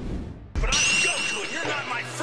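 Intro music with sound effects: a sudden low hit about half a second in, then a high shimmering sound over the music.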